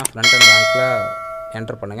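A click, then a bell chime sound effect struck once, ringing out and fading over about a second.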